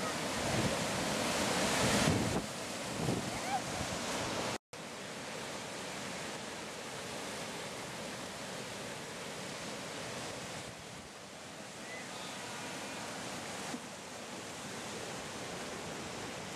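Whitewater river rapids rushing steadily, louder for the first two seconds. The sound drops out briefly at a cut about four and a half seconds in.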